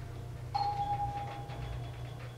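Arrival chime of a Mitsubishi Elepet Advance V traction elevator: a single electronic tone about half a second in, fading over about a second, over a steady low hum in the car.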